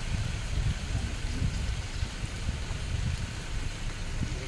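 Wind buffeting the microphone in an uneven low rumble, over a steady hiss of rain.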